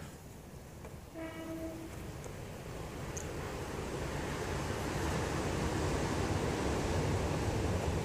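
A short horn note about a second in, then the rumble of a passing vehicle, growing steadily louder.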